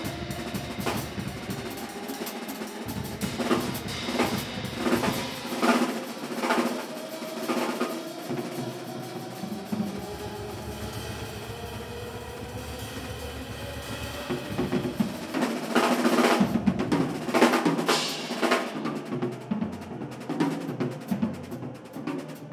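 Live band playing, led by a Yamaha drum kit: snare, bass drum and cymbal strikes over long held notes. The drumming thins out in the middle, then comes back as a loud, busy fill about two-thirds of the way through.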